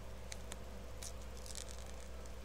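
Faint crinkles and a few light ticks as a plastic sheet of holographic flame nail stickers is handled and a sticker is picked off it with tweezers, over a steady low hum.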